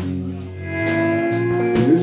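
Live rock band playing an instrumental passage between vocal lines: strummed guitars and a drum kit, with a long held note about a third of a second in that bends upward near the end.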